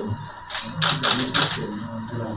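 About half a dozen short, sharp clicks in quick succession in the middle of the stretch, over faint background music.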